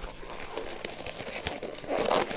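Thin blue disposable gloves, too small, being stretched and pulled onto the hands: soft crinkly rustling with scattered small clicks.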